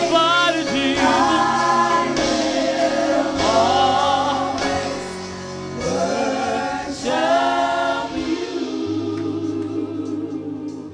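Church worship team of several singers on microphones singing a gospel worship song, with a live band holding sustained low notes underneath.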